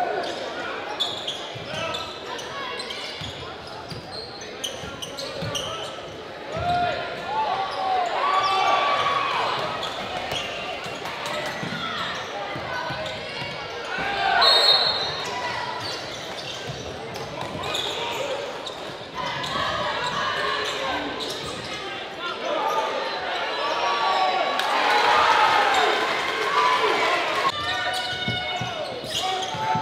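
A basketball being dribbled on a hardwood gym floor, in repeated bounces, with voices of players and spectators calling out across the gym.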